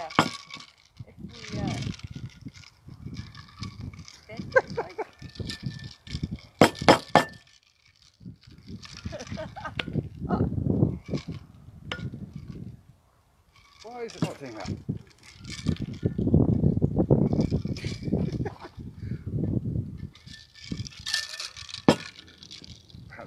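A metal cocktail shaker clinks and knocks a few times, in a short cluster, as its tins are worked on to break the vacuum seal that has stuck them together. Voices are heard around it.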